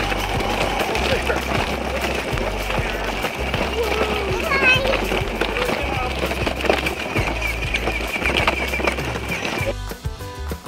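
Hard plastic wheels of a child's ride-on toy quad rolling and crunching over a gravel road, with a low rumble that cuts in and out. Music comes in just before the end.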